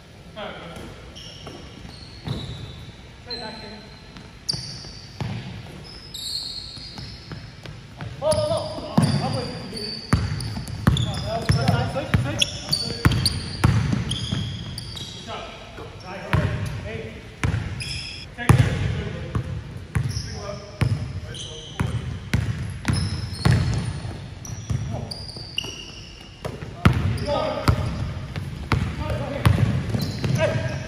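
Basketball game in a large gym: a ball bouncing on the hardwood floor, sneakers squeaking in short high chirps, and players calling out, all echoing in the hall. The play picks up and gets louder about eight seconds in.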